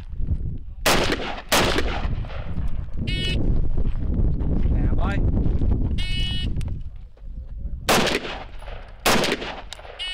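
AR-15 carbine shots on an outdoor range: two shots about a second in and two more near the end, each cracking sharply with a short echo. Short high electronic beeps of a shot timer sound in between, and a steady low rumble fills the middle.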